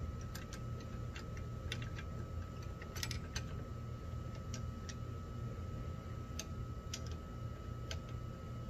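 Irregular light clicks and taps from the plastic and metal parts of a Greenworks Pro 80V push mower being handled as its handle is fitted, with a small cluster about three seconds in. A steady low rumble runs underneath.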